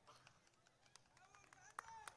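Near silence: faint background during a pause in speech, with one soft click near the end.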